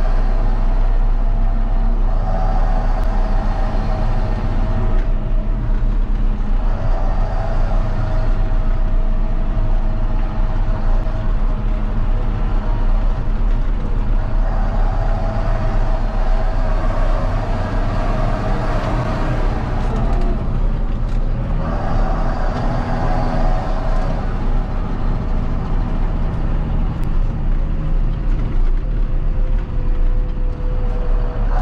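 John Deere tractor's diesel engine running while driving on the road, heard from inside the cab, its pitch swelling and dipping every few seconds. Near the end the pitch slides lower as it slows.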